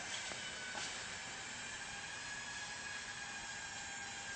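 Faint steady hiss of room tone with a thin high whine, and no distinct event.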